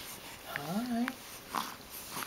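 A short hummed voice sound, about half a second long, rising in pitch and then wavering, followed by a soft click.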